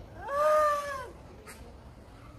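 A woman's high-pitched wailing cry: one drawn-out call that rises and then falls over about a second. A short click follows about a second later.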